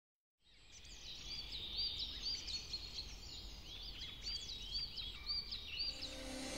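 Outdoor ambience fading in just after the start: birds chirping, short curved calls repeated about twice a second, some higher and some lower in pitch, over a low steady rumble.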